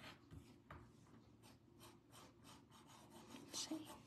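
White chalk pencil scratching on a black drawing tile in short, quick strokes, a few a second, faint.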